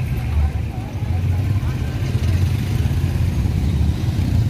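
Busy town-street ambience: a steady low rumble from a motorcycle engine passing close by, with people's voices talking in the background.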